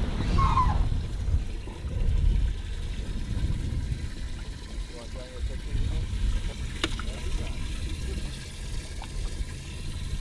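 Water trickling and splashing in a bass boat's livewell as bass are lifted out into a weigh bag, over a steady low rumble. There is a single sharp click about seven seconds in.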